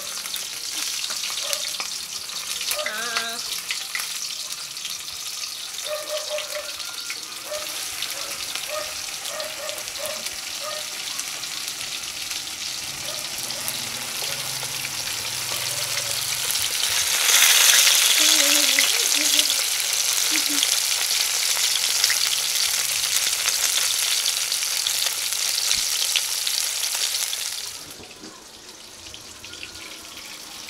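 Floured tilapia frying in hot oil in a wok, a steady sizzle with crackles of spitting oil. The sizzle grows louder a little past halfway and drops away suddenly near the end.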